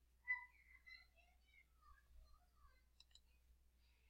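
Near silence with faint, scattered high chirping notes, then two quick computer mouse clicks about three seconds in.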